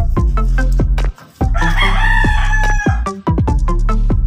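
A rooster crowing once, about a second and a half long, over electronic background music with a steady beat; the music drops out briefly just before the crow.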